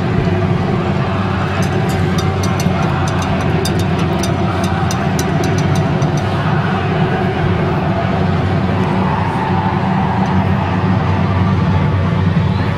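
Stadium crowd din before kickoff, steady and dense, with scattered sharp clicks in the first half.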